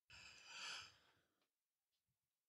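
A single faint breath from a person close to the microphone, loudest about half a second in and fading within about a second and a half.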